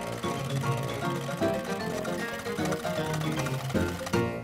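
Cartoon band music: a lively tune with a steady low bass line, played by a small elf band with a tuba and a bass drum.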